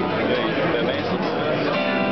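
Pellerin acoustic harp-guitar played fingerstyle, plucked notes ringing together, with fresh notes plucked near the end.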